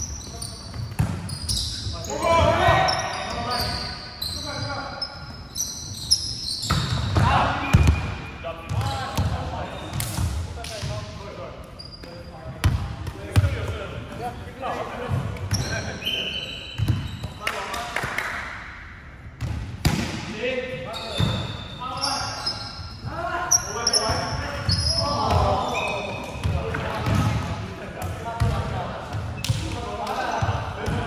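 Players' voices calling and talking during an indoor volleyball game, broken by several sharp thuds of the ball being hit and striking the wooden floor, in a large hall.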